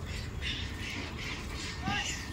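A quick run of short, harsh animal calls, several a second, with a brief call that rises and falls in pitch near the end, over a steady low rumble.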